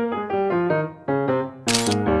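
Background music, a light keyboard melody stepping through short notes, with a camera shutter click near the end.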